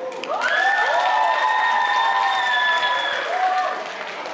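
Audience applauding and cheering as a song ends. Several high-pitched cheering shouts rise steeply about half a second in and are held for about three seconds over the clapping.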